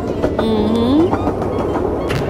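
Miniature ride-on train running along its track: a steady rumble with scattered clicks from the wheels on the rails. About half a second in there is a brief rising tone.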